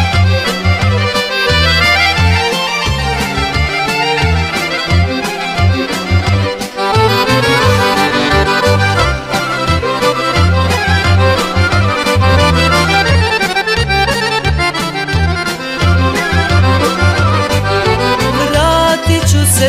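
Instrumental intro of a Serbian folk song: an accordion playing quick melodic runs over a bass line and a steady drum beat.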